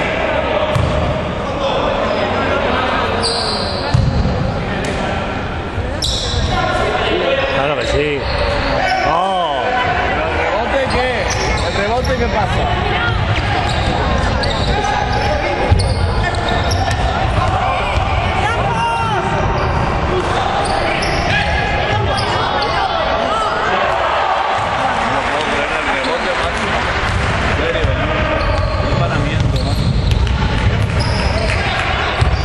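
Basketball being dribbled and bouncing on a hardwood court, with players' and spectators' voices carrying throughout and echoing in a large sports hall. A few sharper knocks stand out over the steady din.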